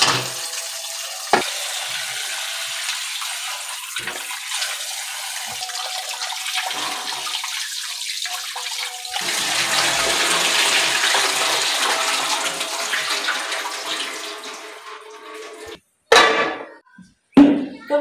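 Tap water running and splashing into a steel bowl of raw chicken pieces in a stainless steel sink as the chicken is washed. About halfway through the splashing grows louder as water is poured off the tipped bowl into the sink, then it stops shortly before the end.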